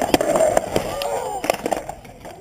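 Skateboard wheels rolling on concrete and the deck clattering on the ground in several sharp knocks as a backflip attempt ends in a fall.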